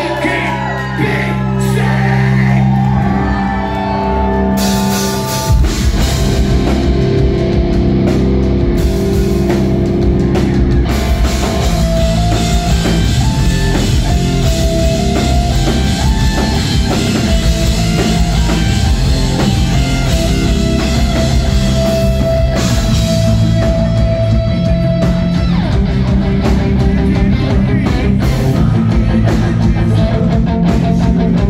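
A live rock band playing loud: held guitar and bass chords ring for about five seconds, then the drums and distorted guitars come in together at full volume, with singing over them.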